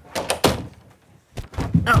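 Heavy thuds of something big tumbling down a staircase: a few dull knocks just after the start, then a louder, quicker run of thumps near the end.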